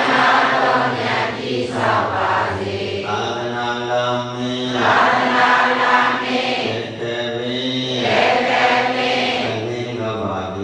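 A Buddhist monk's male voice chanting into a microphone, in long held notes with short breaks between phrases.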